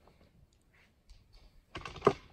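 Handling noise from a gooseneck microphone being bent into place: scattered light clicks and rubbing, then a louder rattle of clicks and a sharp knock near the end.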